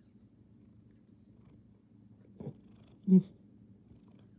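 A tabby cat gives one short, chirp-like trill about three seconds in, after a faint click. A faint steady low hum runs underneath.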